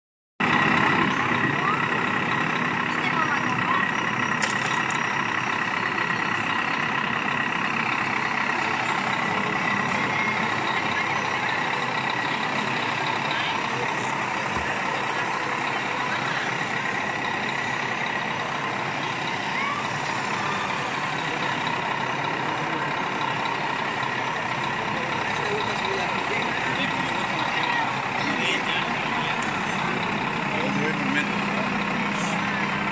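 Steady chatter of a crowd in a large hall, mixed with the running of radio-controlled model trucks and construction machines, with a faint steady high tone throughout.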